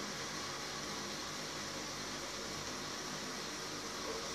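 Steady background hiss with no distinct events: room tone.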